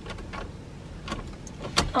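A car's ignition key being turned without the engine starting: no cranking, only faint clicks and a sharper click near the end. The driver takes it for a flat battery.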